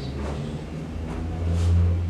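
Low rumble of a running vehicle engine, swelling to its loudest about a second and a half in, with a few faint sharp snaps of movement over it.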